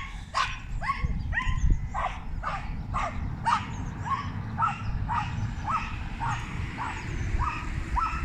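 A dog whining and yipping in a long run of short, high cries that each fall in pitch, about two a second.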